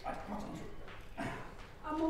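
A person's voice calling out in short wordless cries, then a held, steady-pitched note near the end.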